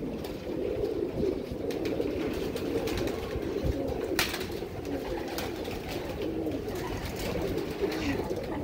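Pigeons cooing continuously in a loft, a steady low warble. A few sharp clicks sound over it, the loudest about four seconds in.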